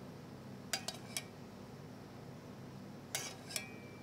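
Metal spoon clinking against a stainless steel saucepan and ceramic dish while sauce is spooned out: a couple of light clinks about a second in, then a few more near the end, one ringing briefly.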